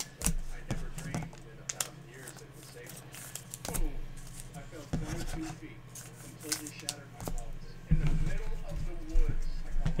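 Quiet, indistinct talking with a few light, sharp clicks scattered through it; the voice grows louder near the end.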